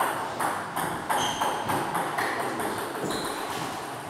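Table tennis ball knocked back and forth in a rally, clicking off the bats and bouncing on the table, about two to three knocks a second. Each knock rings briefly and echoes in the hall.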